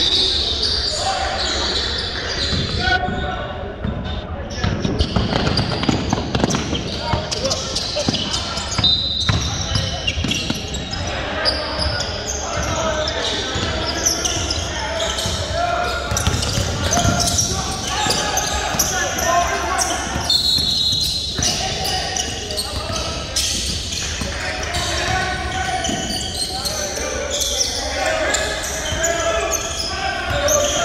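A basketball being dribbled on a hardwood gym floor, repeated bounces echoing in a large hall, under indistinct voices of players and onlookers.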